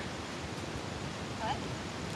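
Steady outdoor background noise with a brief faint voice about one and a half seconds in.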